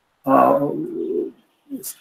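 A man's drawn-out hesitation sound: a held vowel that narrows into a low hum at a steady pitch, lasting about a second. A short intake of breath comes near the end.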